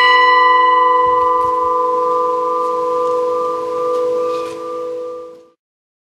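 New church bell dedicated to San Cosimo, cast by the ECAT foundry of Mondovì, ringing on after a single stroke with a steady hum and overtones that slowly fade. The sound cuts off suddenly about five and a half seconds in.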